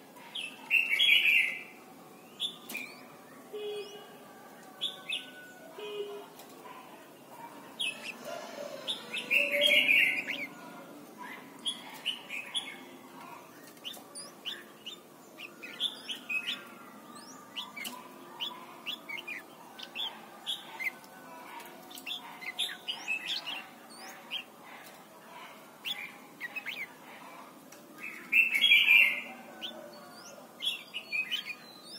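Red-whiskered bulbul singing: three loud, short song phrases, near the start, about ten seconds in and near the end, with quieter short chirps in between.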